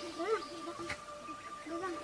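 A young girl crying softly in short whimpers that rise and fall in pitch, a few times over two seconds.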